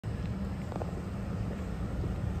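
Steady low rumble of outdoor street noise and wind buffeting a handheld phone's microphone.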